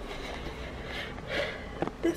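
Soft rustling and handling noise from a handheld camera being swung around, with a short click just before the end.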